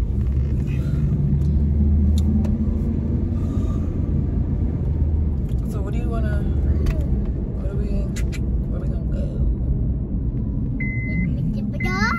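Low, steady rumble of a car's engine and road noise heard inside the cabin, strongest in the first half, with a few faint clicks and a short high beep near the end.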